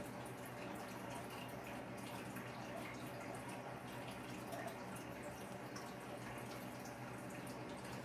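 Faint, steady electrical hum with a light hiss.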